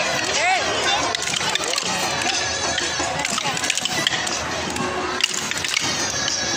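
Outdoor crowd of children's voices chattering and calling over music, with the short clicks of wooden kolattam dance sticks being struck together.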